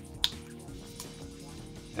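Background music, with one sharp click about a quarter second in, made as a plastic marker cap is pulled off, and a fainter click about a second later.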